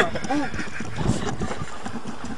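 A Geo car engine running wrecked after swallowing gravel and coins through its intake, with a bubbling, percolating sound that is "like coffee's ready". It has no compression left and is near seizing.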